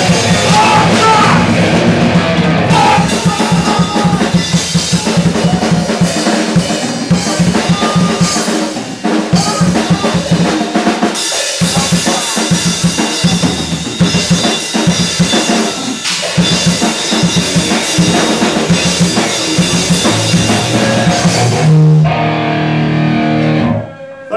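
Live hardcore metal band playing loud and fast, with pounding drum kit and distorted electric guitars and bass. Near the end the music stops abruptly on a held low note, a cut-out the band takes for the electrics failing.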